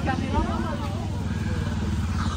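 A motorcycle engine running steadily nearby, a low even rumble.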